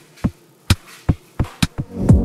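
Sharp percussive thumps at about two a second, each with a short low boom that drops in pitch. They come faster near the end, building into the start of a song.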